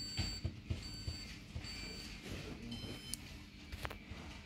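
Hoover DynamicNext washing machine control panel beeping as its buttons are pressed: three short single-tone beeps about 0.8 s apart, then a higher chime of several tones at once. A couple of sharp clicks come near the end.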